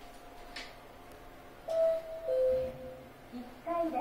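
Mitsubishi elevator hall chime sounding two descending tones, a higher note followed by a lower one about half a second later, with the down arrow lit to signal a car going down. A short click comes shortly before the chime.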